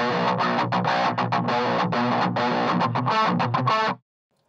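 High-gain distorted electric guitar through a Revv Generator 100P amp head with its EQ set flat and no overdrive pedal in front, playing a choppy, stop-start djent riff of short chugged notes. The riff stops abruptly just before the end.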